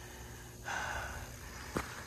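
High-voltage transmission line buzzing faintly and steadily overhead, the corona discharge of the wires. A person's breath rises over it about two-thirds of a second in and lasts most of a second, and there is a short click near the end.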